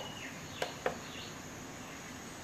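Two quick clicks of the HP 24es monitor's menu buttons being pressed, a quarter second apart, a little past halfway through, over a steady background hiss with faint high chirps.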